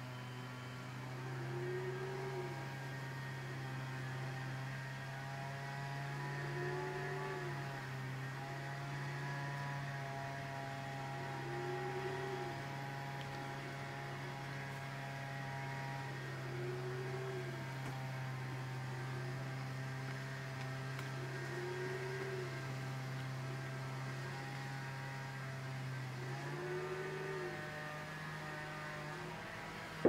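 A steady electrical hum with a faint tone that swells and falls about every five seconds; the hum steps slightly higher near the end.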